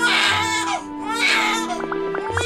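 Cartoon cockroach bawling in two loud wailing bursts over sustained background music, with plucked notes coming in near the end.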